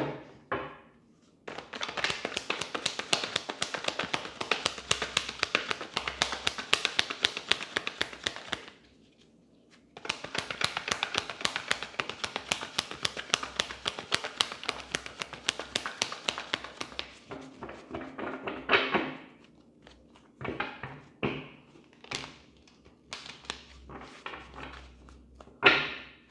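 A tarot deck being shuffled by hand: two long runs of fast card clicks, each several seconds long, then scattered taps and knocks as the cards are squared and handled.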